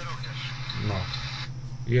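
Radio hiss with a faint, delayed voice coming through it, cutting off suddenly about one and a half seconds in, as the relayed transmission on the Zello-to-CB radio gateway ends. A steady low electrical hum runs underneath.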